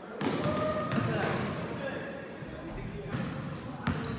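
Basketball bouncing on an indoor gym court, with indistinct shouts and chatter from players echoing in the large hall. The sound breaks off abruptly near the end.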